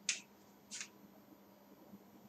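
Two brief dry scratches against a whiteboard, one at the very start and one under a second later.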